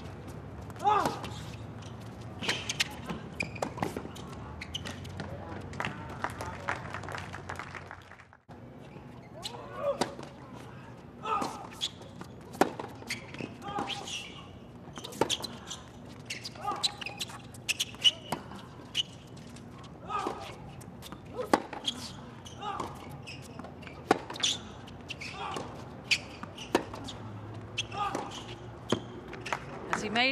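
Tennis rallies on a hard court: a string of sharp racket-on-ball strikes and ball bounces, with short vocal grunts from the players. The sound drops out briefly about eight seconds in, then the hitting resumes.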